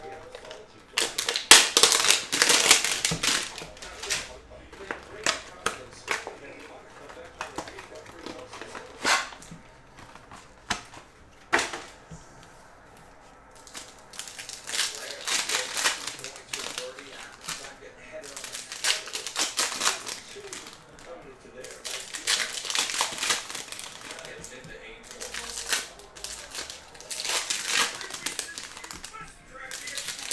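Cellophane wrap and a foil trading-card pack being torn open and crinkled by hand, in repeated bursts of crackling with a few sharp clicks.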